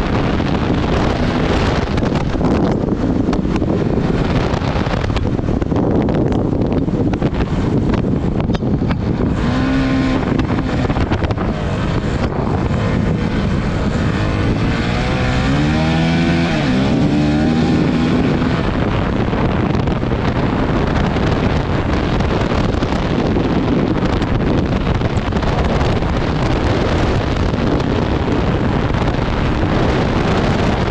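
Honda CRF450RL's single-cylinder four-stroke engine running hard at speed, with heavy wind noise on the microphone. About ten seconds in, and again from about fifteen to eighteen seconds in, the engine note falls and rises in several swoops.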